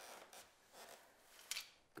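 Near silence with faint rustling and one sharp, short click about one and a half seconds in.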